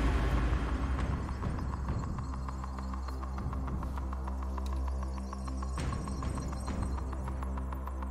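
Game-show suspense music: a low, steady throbbing hum under a fast, evenly spaced ticking pulse.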